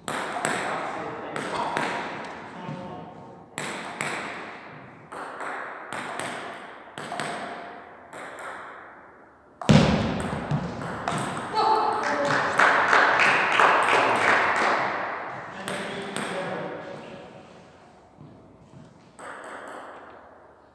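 Table tennis rally: the ball gives sharp clicks off the bats and the table, each one ringing in a large hall. About halfway a loud knock is followed by several seconds of louder, denser sound, and the clicks thin out near the end.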